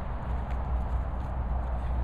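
Steady low rumble of wind and handling noise on a handheld camera's microphone, with a few faint soft knocks.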